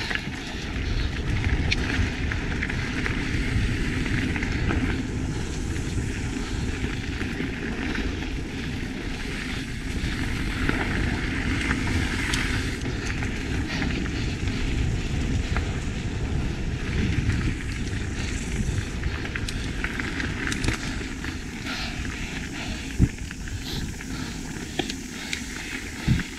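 Mountain bike rolling fast down a dirt trail: steady tyre noise over packed dirt with wind rushing over the camera microphone, and occasional sharp knocks from the bike over bumps.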